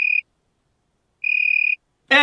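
Cricket-chirp comedy sound effect over dead silence: two short, high chirps, one at the very start and a slightly longer one just past halfway, the stock 'crickets' cue for a joke that fell flat.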